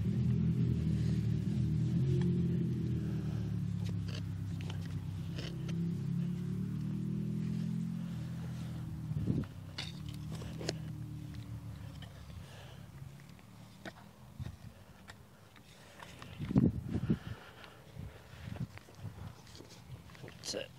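A low engine drone from a motor vehicle fades away over the first dozen seconds. Under it a garden fork scrapes and knocks in the soil as potatoes are dug, with sharper knocks about nine seconds in and a louder cluster about sixteen seconds in.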